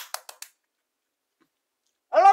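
A quick run of about five sharp clicks or taps within the first half second, then near silence apart from one faint short sound about a second and a half in.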